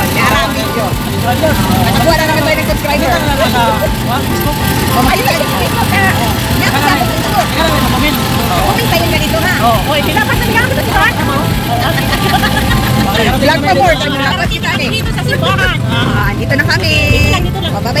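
Several people talking over one another while riding in an open-sided passenger vehicle, with the steady rumble of its engine and road noise underneath.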